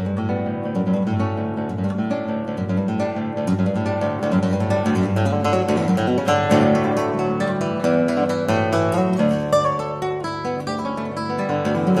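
Solo classical nylon-string guitar played fingerstyle: a fast, unbroken run of plucked notes ringing over one another.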